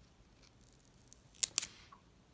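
Thin plastic protective film on an AirPods charging case crackling in a few short, sharp bursts past the middle as fingers peel it away.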